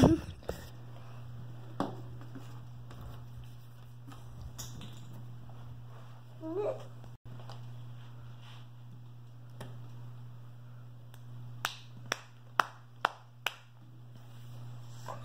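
A few sharp taps in quick succession near the end, cardboard jigsaw pieces being put down on a wooden tabletop, over a steady low hum. A loud bump comes right at the start, and a short rising sound about halfway through.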